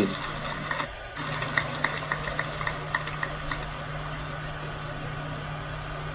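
A steady low hum with a fainter steady high tone, briefly dropping out about a second in, with scattered faint clicks over the first few seconds.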